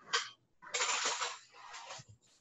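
Metal cutlery clattering as it is handled in a kitchen: a sharp clink just after the start, then about a second of rattling that fades.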